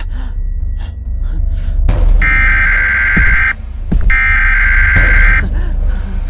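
Two loud blasts of Siren Head's siren call, each a bit over a second long at one steady pitch with a short gap between them, over a deep low rumble.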